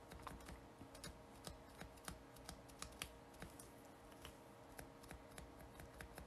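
Faint, irregular soft taps, two or three a second: a sponge applicator dabbing white paint gel through a stencil onto a nail tip.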